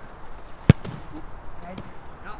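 A football kicked hard in a shot at goal: one sharp thud about two-thirds of a second in.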